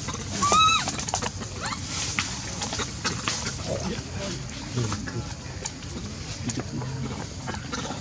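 Macaque giving one short high squeal about half a second in, rising and then falling in pitch, followed by scattered small clicks and drips of water.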